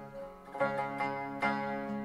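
Traditional Uzbek music played on plucked string instruments: a short instrumental phrase of about four notes, each starting roughly half a second apart and ringing on, in the gap between sung lines.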